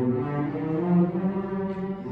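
A school string orchestra playing slow, held chords, with the low strings strongest.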